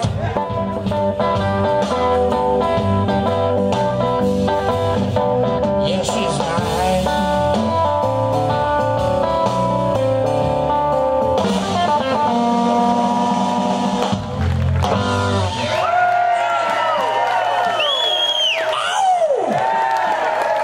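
Live blues band playing: electric guitar lead over bass guitar and drums. About sixteen seconds in, the bass and drums drop away and the guitar plays a closing run of bending, gliding notes as the song ends.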